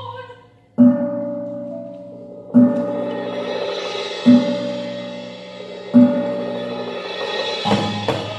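Live percussion music: four deep, ringing strokes about a second and a half apart, over a sustained shimmering layer that builds after the second stroke. Quick sharp taps start near the end.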